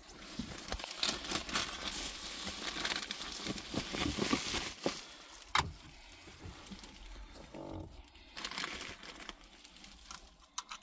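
Plastic bags crinkling and rustling as they are handled, for about five seconds. A single sharp click comes a little past halfway, followed by quieter handling and a brief rustle near the end.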